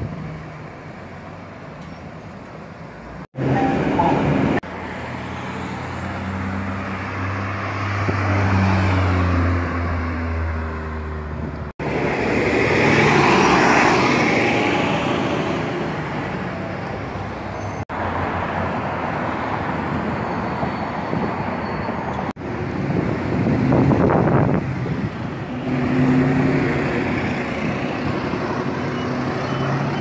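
Street traffic heard in several short clips: cars and trucks driving by and pulling away from intersections, with engine hum and tyre noise. The recording cuts off abruptly several times as one clip gives way to the next.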